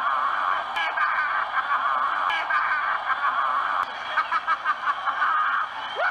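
A man laughing and shouting excitedly over a cheering stadium crowd, on old game-film sound. Near the end comes a quick run of laughs.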